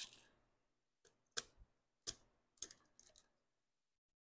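A handful of faint, sharp clicks and taps, about a second or less apart, from fingers working at a small camera's plastic battery door and compartment while trying to pull out a slim battery.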